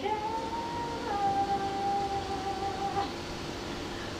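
A woman jazz vocalist holding one long sung note that steps down slightly about a second in and fades near the end, over a faint held tone from the band.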